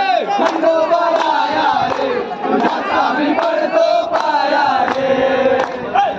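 A group of men chanting and singing loudly together, with steady rhythmic hand-clapping.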